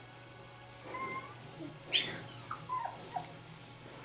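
Rhodesian Ridgeback puppies yipping and whining while they play-fight: a short whine about a second in, one sharp, high yelp about two seconds in, then a few short falling squeaks.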